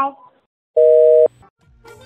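A telephone line tone: a steady two-note beep lasting about half a second, the sign of the phone call being disconnected. A low hum and the start of music come in near the end.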